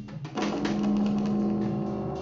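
Bowed double bass in free-improvised music: a held note breaks off at the start, and a new sustained note comes in about a third of a second later, with scattered clicks over it.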